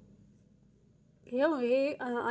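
A metal spoon stirring dry rolled oats and powder in a saucepan, a faint scratchy rustle over a low steady hum. A woman's voice cuts in loudly about a second and a half in.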